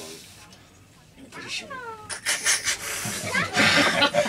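A man's strained cry sliding down in pitch during an arm-wrestling pull, then several voices talking loudly over one another.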